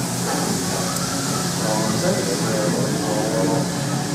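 Indistinct chatter from people talking nearby, over a steady low hum and a high hiss of room noise.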